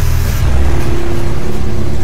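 Dramatic soundtrack: a loud, deep rumble with a single held note coming in about half a second in.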